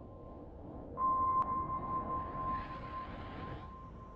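Intro logo sound effect: a steady high electronic tone over a low rumble. About a second in it jumps louder with a short click, then slowly fades.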